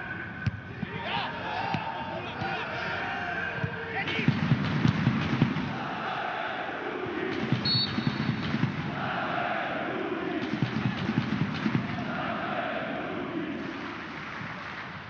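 Football supporters chanting in unison in the stadium stands, in repeated swelling phrases, with a drum beating along in short runs of thuds.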